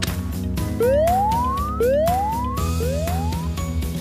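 Background music with an electronic rising whoop, three times about a second apart, each glide sweeping up in pitch like an alarm tone.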